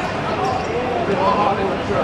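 A football thudding on a hard court as players kick and bounce it, with men's voices calling out over steady background noise.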